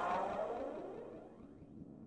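The reverberant tail of an electronic logo sting, a synthesized sound effect whose pitch sweeps downward as it steadily fades away.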